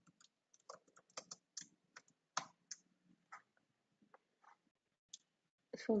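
Keys being typed on a computer keyboard: faint, irregular clicks, quickest in the first three seconds, then a few scattered clicks.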